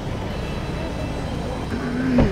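Steady low rumble of car and street noise with faint voices behind it; near the end a car horn begins to sound.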